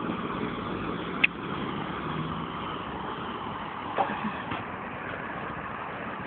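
Steady street traffic noise, with a sharp click a little over a second in and a smaller knock about four seconds in.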